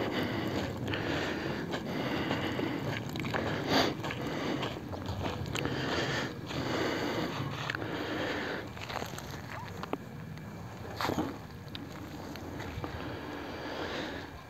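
Steady rushing noise of wind on the microphone in an open field, with a few scattered faint clicks.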